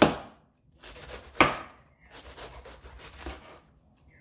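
Knife striking a cutting board: two sharp chops about a second and a half apart, with softer scraping and rubbing on the board between and after them.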